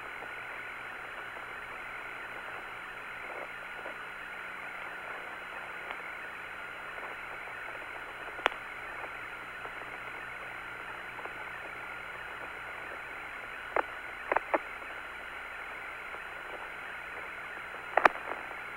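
Steady hiss of the Apollo 17 air-to-ground radio link with no one transmitting, with a faint hum underneath. A sharp click comes about eight and a half seconds in, and a few short blips come around fourteen seconds.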